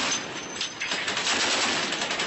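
Warship-mounted machine gun firing rapid sustained bursts, the shots running together into a continuous rattle that becomes more distinct and evenly spaced in the second half.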